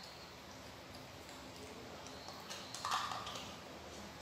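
Quiet spoon-feeding of a baby monkey: faint eating sounds, with a short cluster of clicks about three seconds in.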